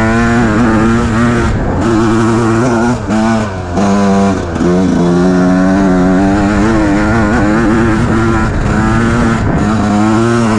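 Enduro dirt bike engine under way, its note rising and falling with the throttle. It dips sharply twice about three to four seconds in, then holds steadier.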